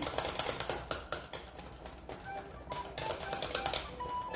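A spoon beating fritter batter in a glass bowl, a rapid run of clicks as it knocks against the bowl.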